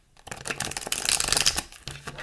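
A deck of tarot cards being shuffled by hand: a fast, dense flutter of card edges slapping together. It starts a fraction of a second in, is loudest in the middle and dies away near the end.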